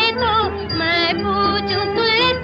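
A song: a solo voice sings a wavering, ornamented melody with pitch bends, over a steady low instrumental accompaniment.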